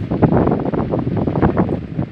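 Papyrus reed fire burning, a dense continuous crackling and popping like a million firecrackers going off at once, with wind buffeting the microphone.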